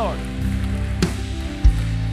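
A church band plays softly under the service: sustained low chords that change twice, with two single drum hits about a second in and near the end, over a faint steady hiss.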